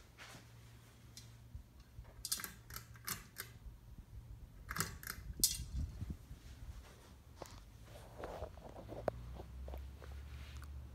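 Hunter Vista ceiling fan with an AirMax motor running with a low, steady hum. Several sharp clicks and rustles from handling come between about two and five and a half seconds in, with a few more near the end.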